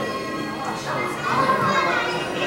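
Indistinct chatter of visitors in a large hall, children's voices among it, over steady background music. A high-pitched voice is loudest a little past the middle.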